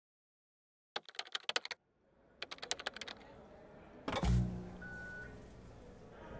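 Production-company logo sound effect: two quick runs of sharp clicks like typing, then a low boom about four seconds in that fades away, with a brief high beep just after it.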